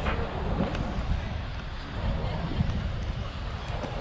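Wind buffeting the microphone in a steady, uneven rush, with faint voices of people talking nearby.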